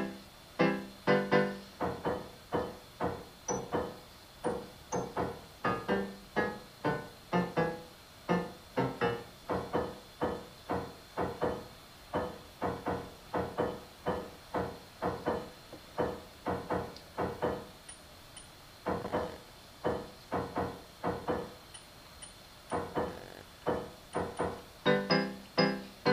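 Instrumental keyboard music: a steady run of struck piano-like notes, a little over two a second, each fading before the next, thinning briefly a few seconds before the end.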